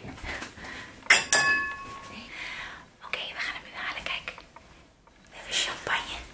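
Hushed whispering, and about a second in a single sharp clink of glass that rings on briefly with a clear, bell-like tone.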